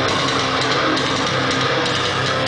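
A metalcore band playing live, loud and dense: heavily distorted electric guitars over a drum kit, with no break.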